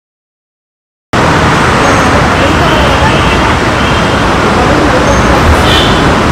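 Silence for about the first second, then loud, steady street noise cuts in suddenly: road traffic with voices mixed in.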